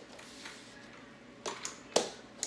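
Kick scooter knocking and clacking on a hardwood floor as it is handled. After a quiet stretch come a couple of light clacks about one and a half seconds in, then one sharp, loud knock at the very end.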